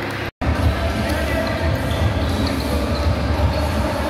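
Indoor basketball game sound: a basketball bouncing on the hardwood court over a loud, pulsing low rumble of hall noise and voices. The sound drops out briefly about a third of a second in.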